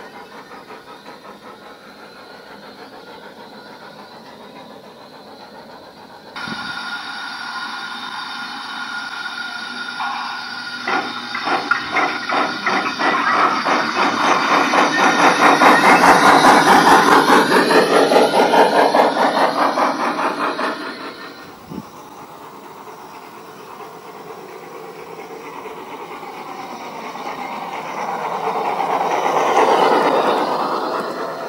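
Gauge 1 model trains running on a garden railway: a train passes close by with a rhythmic clicking clatter that swells to its loudest about halfway through and fades away. Another train draws near toward the end.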